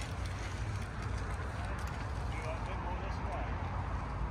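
Steady outdoor background noise with a low rumble, and faint voices talking in the distance about halfway through.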